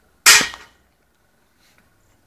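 A single loud, sharp impact about a quarter second in, dying away within half a second.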